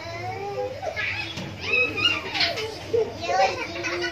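Children's voices talking and calling out, high-pitched and lively.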